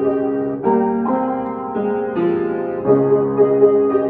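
Upright piano being played: sustained chords, with a new chord struck about every half second to second and each left ringing into the next.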